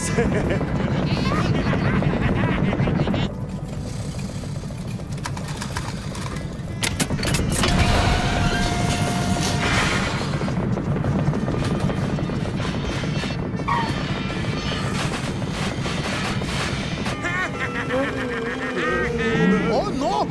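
Film soundtrack mix of music with vehicle engines and road noise from cars and a truck on a highway, with a short laugh near the start.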